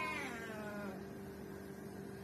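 Domestic cat meowing: a single drawn-out meow that falls in pitch and fades out about a second in.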